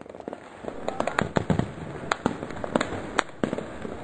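Many fireworks and firecrackers going off together: a dense, continuous crackle with frequent sharp bangs scattered through it, building up over the first second.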